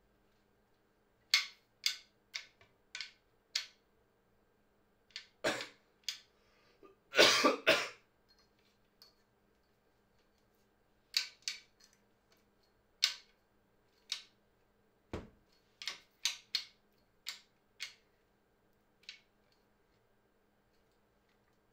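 Sharp clicks and knocks from a tripod's leg latches and fittings being worked by hand, coming in scattered groups, with a longer, louder burst of noise about seven seconds in.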